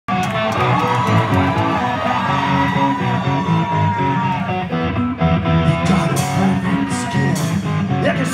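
Rock band playing live, heard from the audience in a club: electric guitars, bass and drums, with cymbal crashes in the later seconds.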